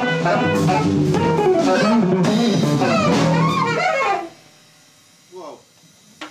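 Live jazz quartet of saxophone, electric guitar, bass and drums playing loudly, then stopping together about four seconds in as the piece ends. A short pitched sound rises out of the quiet near the end.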